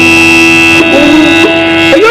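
Steady reedy drone of the Yakshagana accompaniment holding one pitch, with a short sliding vocal sound under it about a second in.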